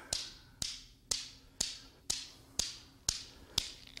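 Steel balls of a Newton's cradle clicking together as they swing back and forth, a sharp click about twice a second with a brief metallic ring after each.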